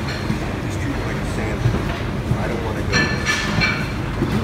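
Busy buffet-room ambience: a steady murmur of background voices over a low hum, with a brief ringing clink of crockery about three seconds in.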